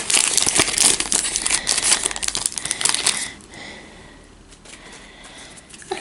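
Foil wrapper of a Pokémon booster pack crinkling as it is torn open by hand, dense and crackly for about three seconds, then much quieter.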